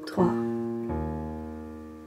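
Piano playing a left-hand E-flat major arpeggio in octaves. A low note is struck about a second in and rings on with the earlier notes, slowly fading.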